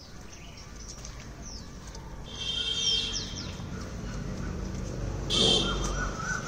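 Birds calling: a high trilling burst between two and three seconds in and another near the end, with short falling chirps in between. A low rumble rises near the end.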